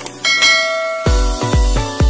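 A click and a bright bell-like ding from a subscribe-button animation sound effect. About a second in, electronic music comes in, with deep, downward-sweeping bass beats about twice a second.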